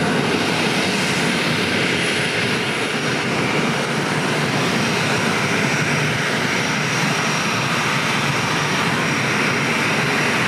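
A Boeing 737's twin jet engines running at low taxi power as the airliner turns on the runway. It is a steady, even rush with a thin high whine over it.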